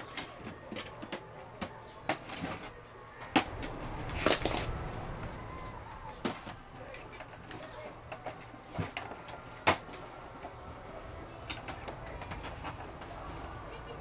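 Plastic inkjet printer casing being handled: irregular knocks and clicks as it is lifted, tilted and set down on a wooden box, the sharpest about three and a half and ten seconds in.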